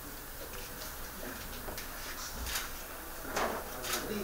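Busy small-office room sound: a low steady background with scattered short clicks and knocks from people moving and handling things. The clicks come a few times through the stretch, the loudest near the end.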